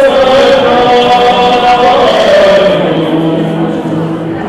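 Male vocal group singing slowly in harmony on long held notes. Near the end the upper voices fall away, leaving a low held note.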